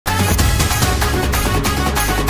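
Electronic background music with a steady beat.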